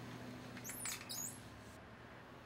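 A wooden desk drawer slid on its metal runners, giving a few short high squeaks about a second in, over a low steady hum.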